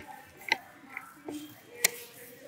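Two sharp clicks, one about half a second in and a louder one near the end, over a low, quiet background.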